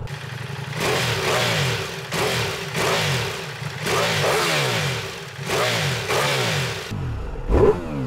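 Ducati Multistrada V4S's 1158 cc V4 engine revved from idle through an Akrapovic silencer, about five blips, each rising sharply and falling back toward idle. Near the end the sound turns duller and deeper.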